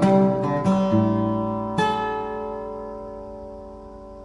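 Erredi Guitars sunburst dreadnought acoustic guitar played fingerstyle: a few quick plucked notes over a bass note, then a full chord struck just under two seconds in and left to ring and fade away.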